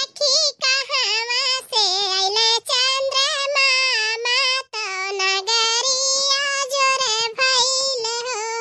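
A high-pitched cartoon voice singing a song, phrase after phrase with brief breaths between them.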